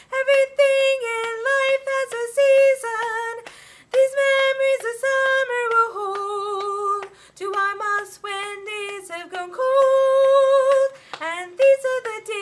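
A woman singing unaccompanied, a melody of held notes without clear words; her voice drops lower about halfway through and climbs back, with a quick swoop near the end.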